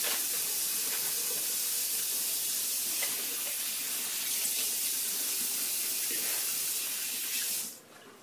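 Bathroom sink faucet running steadily into the basin while hands rinse under it and splash water onto the face. The water sound cuts off suddenly shortly before the end.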